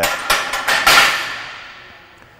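Loaded Olympic barbell being racked onto the steel J-hooks of a power rack. Several metal clanks land in quick succession in the first second, and the bar and plates ring on as the sound fades away.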